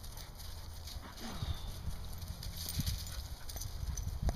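Belgian Sheepdogs playing on frozen ground and dry leaves: paws scuffling and padding, with a few soft low thuds.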